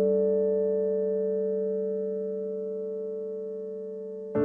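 A single piano chord, struck just before and held, slowly dying away with no new notes.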